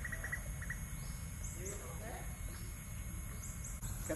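Outdoor ambience by a pond: a steady low rumble throughout, faint distant voices around the middle, and a few short, high rising chirps.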